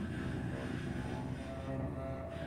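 Bowed cello and contrabass clarinet improvising together in a dense, low, droning texture of overlapping sustained tones.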